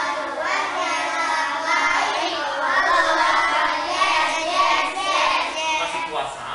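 A group of young schoolchildren singing together, many voices in unison with sustained notes.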